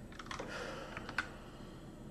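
Computer keyboard keystrokes: a quick run of several clicks in the first second or so, ending in one sharper, louder keypress.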